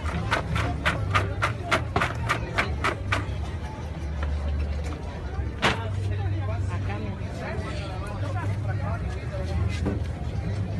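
Candied walnuts being scraped and tipped out of a copper pan: a quick run of clicks and knocks, about five a second, for the first three seconds, and one more knock about halfway, over a steady low hum and background voices.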